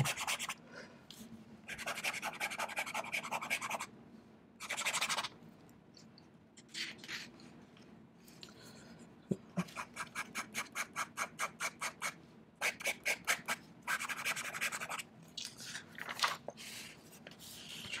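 Extra-fine JoWo #6 fountain pen nib scratching across notebook paper in fast looping and zigzag strokes. The strokes come in separate bursts, one a quick run of about five strokes a second.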